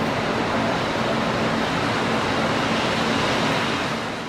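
Rubber-tyred Mexico City Metro train pulling into the station: a steady, even rushing noise with a faint low hum.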